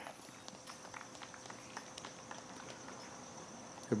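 Faint outdoor background with scattered soft taps and clicks and a faint steady high tone.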